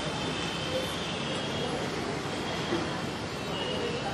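Steady background noise with no distinct events, with faint high steady tones in the first half.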